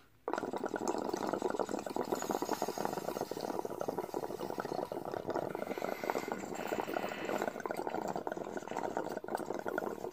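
Water bubbling rapidly through a glass water pipe as it is inhaled from in one long, unbroken pull. The bubbling starts abruptly just after the beginning.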